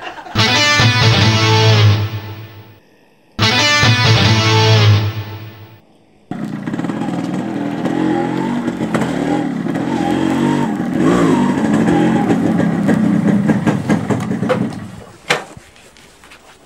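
Two identical guitar music stings, one after the other. Then a Yamaha RX135 two-stroke single-cylinder motorcycle engine runs as the bike rides in, and stops near the end, followed by a sharp click.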